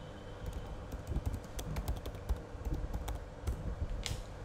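Typing on a computer keyboard: a run of irregular key clicks starting about half a second in, over a steady low background hum.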